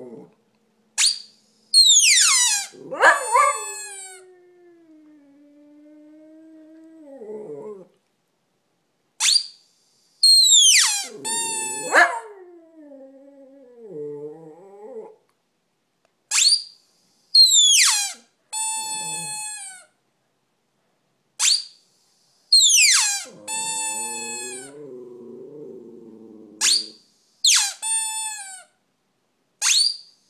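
Shih Tzu howling in long, low, wavering notes, alternating with groups of about three high-pitched falling squeals that come back every six or seven seconds.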